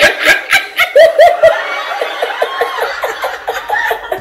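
Laughter: a run of quick, loud laughs in the first second and a half, trailing off into softer laughing that carries on to the end.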